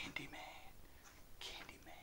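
A man whispering a few words, softly and breathily.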